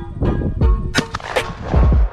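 A shotgun shot over loud background music with a steady beat.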